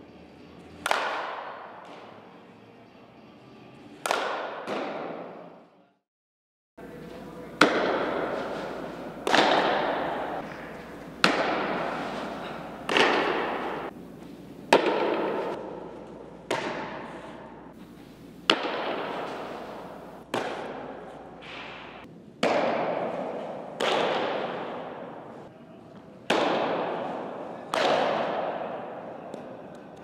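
A softball bat hitting pitched softballs twice, then a series of about a dozen sharp softball impacts, one every two seconds or so, each followed by a long echo in a large indoor hall.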